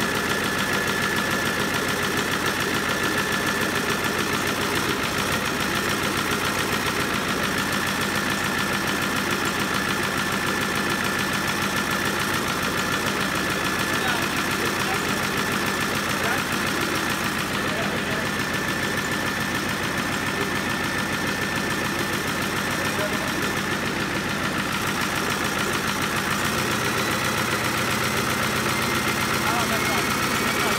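Turbocharged Ford 7.3 IDI diesel V8, marinized for a boat, running steadily on a test stand with its diesel clatter and a steady high turbo whine over it. Near the end a faint high tone rises a little.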